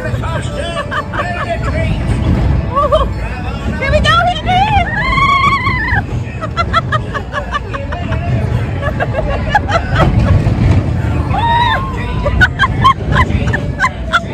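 Riders laughing and squealing in a tractor-pulled trailer amusement ride over a steady low rumble, with music and crowd chatter behind.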